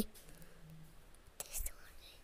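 Quiet room tone between spoken words, with a brief faint whisper from the narrator about one and a half seconds in.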